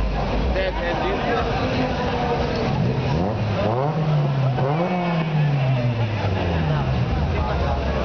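Car engine revved twice about halfway through: the pitch climbs, dips, peaks again and then falls away, with crowd chatter throughout.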